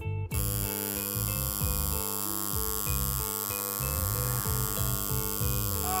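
Coil tattoo machine buzzing steadily on skin, switching on just after the start, over background music with a moving bass line. A pained cry comes near the end.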